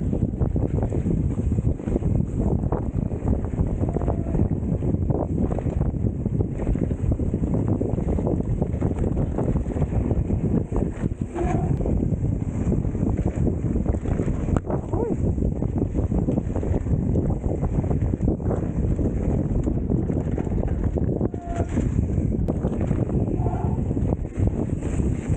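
Wind buffeting the microphone of a bike-mounted camera on a fast mountain-bike ride along a dirt forest trail, with tyres rolling over dirt and frequent knocks and rattles as the bike hits bumps.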